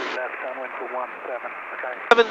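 Faint, thin-sounding speech in the cockpit headset audio, a voice murmuring for most of the two seconds.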